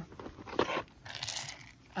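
Small plastic containers and tools being handled in a plastic storage basket: a few sharp clicks, then a short rustling rattle just after the middle.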